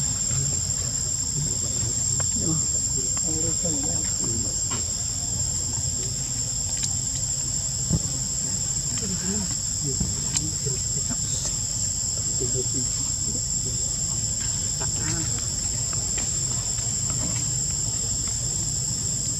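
Steady, high-pitched chorus of forest insects, droning without a break.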